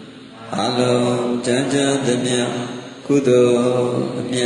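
A Buddhist monk's male voice chanting into a microphone in long held notes, two phrases, the second beginning about three seconds in.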